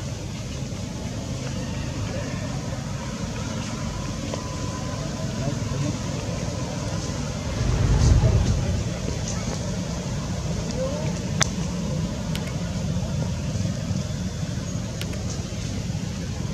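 Steady outdoor background rumble that swells louder for about a second halfway through, with a few sharp clicks later on.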